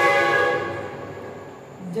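A loud horn-like tone with many overtones starts suddenly, holds one steady pitch and fades away over about a second and a half.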